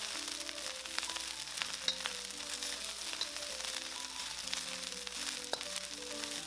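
Fried rice sizzling steadily in a hot wok as it is stir-fried with a wooden spatula, with a few light clicks. Soft background music of short melody notes plays underneath.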